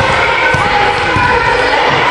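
A ball bouncing and thudding on a sports-hall floor, several separate thuds over about two seconds, under steady chatter and shouts of children.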